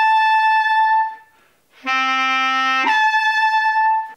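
Bass clarinet leaping up from a clarion D to the A while the player holds the D's lower tongue voicing. The A fails to sound and squeaks out as a shrill, thin pitch far above the intended note. The squeak is heard twice: the first is held until about a second in, and after a short gap a lower, fuller D starts and about a second later breaks up into the second squeak.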